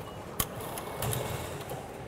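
Train ticket machine's banknote slot taking in a bill: a click, then a short low motor whir about a second in.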